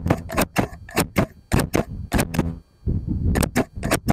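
Metal scissors snipping over and over, sharp crisp snips about three or four a second, with a short pause near the end before a quick run of snips.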